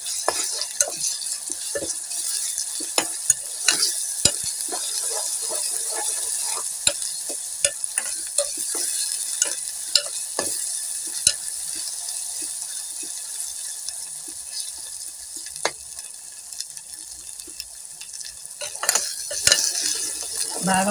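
Onions, green chillies and ginger paste sizzling in hot oil in an aluminium pressure cooker, with a steel ladle scraping and knocking against the pot as they are stirred. The ladle strokes come irregularly and grow sparser in the second half while the sizzle continues.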